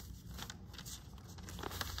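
A square sheet of origami paper rustling and crinkling in short strokes as it is lifted and folded in half against a wooden tabletop.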